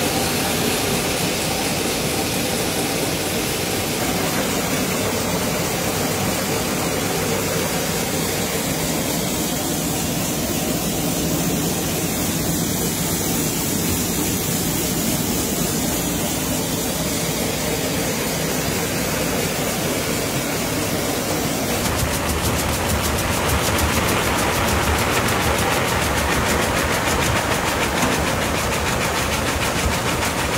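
Sabudana (tapioca pearl) factory machinery running, a steady mechanical din. About 22 s in it changes to a louder, rapid rattle.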